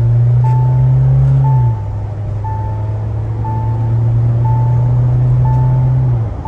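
Mahindra Thar's engine under full-throttle acceleration with its automatic gearbox, holding a steady drone that drops at an upshift about two seconds in, then slowly climbs again. A seatbelt reminder chime beeps about once a second over it.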